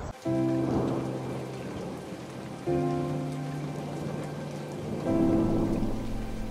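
Film soundtrack of steady rain with a soft musical score: held chords come in three times, about every two and a half seconds, and each slowly fades.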